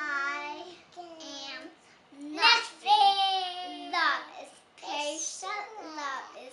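Young girls' voices singing in high, drawn-out notes, with a long held note from about two seconds in.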